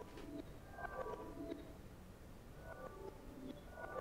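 Faint kalimba notes processed with reverse reverb: each group of soft pitched notes swells up into its attack instead of dying away, the groups coming about every second or two.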